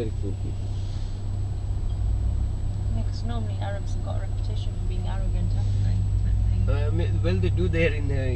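Steady low rumble of a moving vehicle heard from inside the cabin, with voices talking faintly that become clearer near the end.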